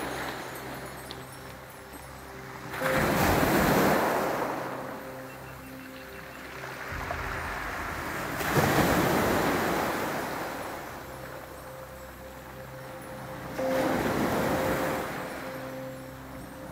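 Small sea waves breaking on a shore of pebbles and boulders. Three waves break about five seconds apart; each swells quickly and then fades as the water washes back among the stones.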